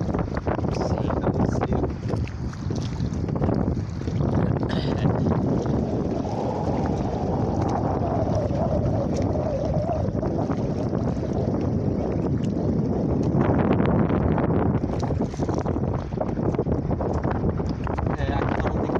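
Strong wind buffeting the microphone on a small rowing boat in choppy water, a dense, steady rumble with the slap of water and oars under it. A faint wavering hum runs through the middle of it.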